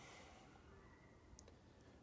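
Near silence: faint room tone, with one small click about a second and a half in.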